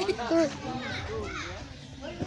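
Background voices of people and children talking, quieter than the nearby speech around them.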